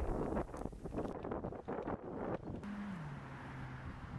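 Wind buffeting the microphone outdoors, gusty and uneven, then steadier after a cut about two-thirds of the way through, with a faint low hum that drops in pitch near the end.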